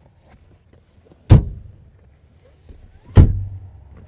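Two heavy thuds about two seconds apart: the 60/40 split rear seatbacks of a 10th-generation Honda Civic sedan being swung back upright and latching into place.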